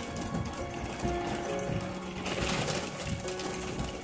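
Background music with held notes that change about once a second.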